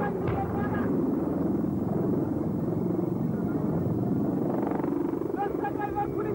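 Military helicopter flying past, its rotor beating fast and steadily throughout, with a short repeated higher note heard briefly near the start and again near the end.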